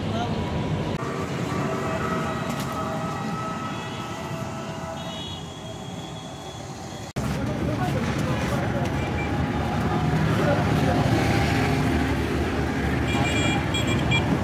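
Roadside traffic noise with people's voices in the background. The sound breaks off sharply about seven seconds in, then carries on busier, with a brief high-pitched beep near the end.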